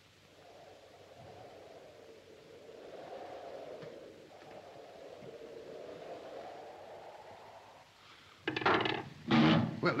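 Radio receiver being tuned: a faint wavering whistle over static that slowly rises and falls in pitch as the dial turns. A man's voice comes in near the end.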